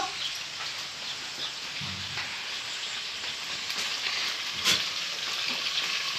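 Homemade pork sausage (linguiça) frying in a cast-iron pan on a wood-fired stove: a steady sizzle, with one sharp click a little before the end.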